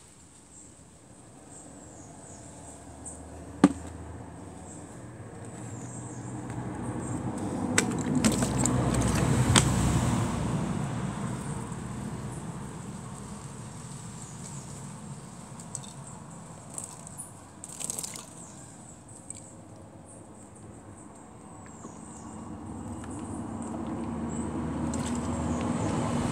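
Low rumble of a passing road vehicle swelling and fading over several seconds, then another building up near the end. A single sharp click about four seconds in.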